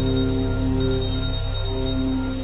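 Synthesized ambient music from a PlantWave biosonification device, its notes driven by electrical changes in the mushroom it is wired to. Several long held tones shift slowly over a steady low drone.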